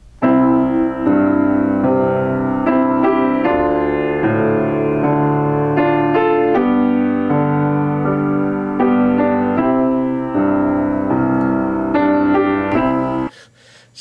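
Yamaha Disklavier Mark IV grand piano played by hand: a slow passage of chords and melody notes. It starts just after the beginning and cuts off abruptly near the end.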